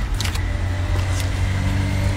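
A nearby engine running steadily: a low hum with a thin, high whine over it, and a few faint clicks on top.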